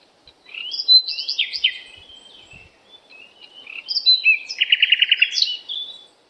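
A songbird singing varied phrases of high chirps and whistled sweeps, with a quick trill of rapidly repeated notes near the end.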